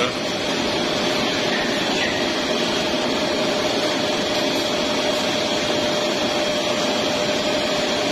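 Poultry processing line running: the electric motors and machines of the overhead shackle conveyor line give a steady mechanical noise with a constant whine.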